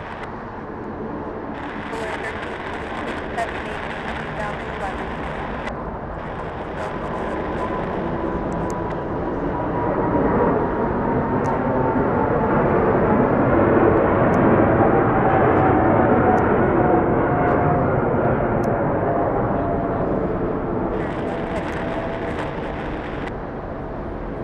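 A Boeing 747 freighter's four jet engines at go-around thrust as the aircraft climbs away overhead: a heavy roar that builds to a peak about two-thirds of the way through and then begins to fade. An engine whine slides slowly down in pitch as the jet passes.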